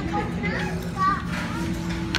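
Eatery background: people talking, children's voices among them, over background music and a steady low hum.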